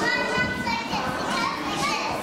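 A crowd of young children chattering and calling out all at once. A high-pitched child's voice stands out about the first half-second.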